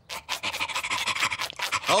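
Cartoon dog panting in quick, short breaths, about six a second.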